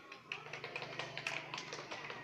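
A group of children clapping their hands, the claps scattered and out of step with each other.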